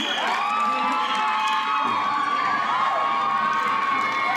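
Crowd cheering and screaming: many high-pitched voices shouting over one another.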